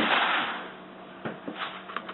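Brown paper bag swishing and rustling as a kitten dives into it and slides across a tile floor, then a couple of light crinkles of the paper as the kitten shifts inside.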